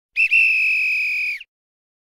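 An edited-in sound effect: one steady, high, whistle-like tone lasting about a second and a quarter. It has a brief blip at its start and cuts off abruptly.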